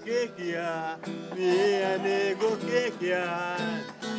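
An elderly man singing in long held notes, phrase after phrase, with an acoustic guitar faintly behind him.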